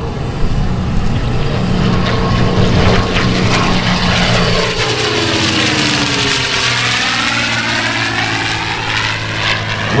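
P-51 Mustang's Merlin V-12 engine and propeller at power during a low curving pass. The pitch drops as the plane goes by, about halfway through.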